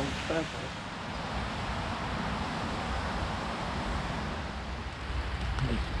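Steady road-traffic noise from a nearby main road, a continuous tyre rush that swells slightly in the middle and eases near the end.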